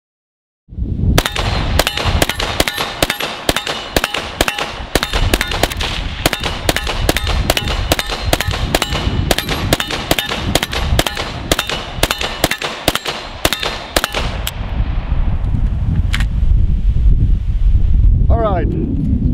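AK rifle firing 7.62x39 M67 surplus ammunition in rapid semi-automatic fire, about three shots a second for some thirteen seconds, with steel targets ringing under the hits. After a pause of about a second and a half comes one last shot.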